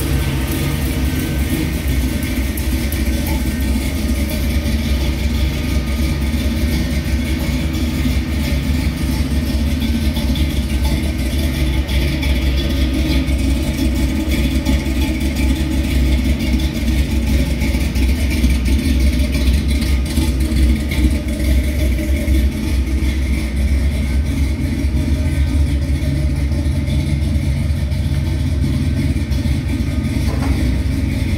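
1969 Plymouth Road Runner's V8 engine idling steadily, with a deep rumble from the exhaust.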